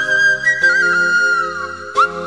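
Intro music: a flute melody held high, wavering and then sliding down near the end, over sustained accompanying chords.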